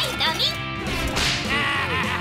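Cartoon sound effects over background music: a sharp, whip-like swish right at the start and a rising whoosh about a second in, leading into a bright musical sting.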